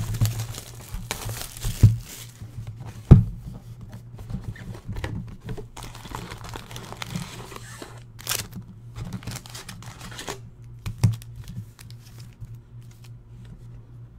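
Plastic shrink wrap being torn and crinkled off a sealed box of trading cards, then cardboard handling knocks as the box is opened and the packs lifted out, with one sharp knock about three seconds in. A steady low hum runs underneath.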